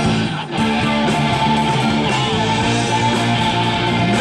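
Live rock band playing an instrumental passage: electric guitars over bass and drums, with a short break about half a second in.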